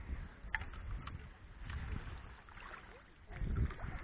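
Water splashing and dripping around a landing net holding a carp as it is drawn through the shallows and lifted out of the pond, with a steady low rumble on the microphone. A few sharp splashes come in the first second, and the sound grows louder near the end as the net comes out of the water.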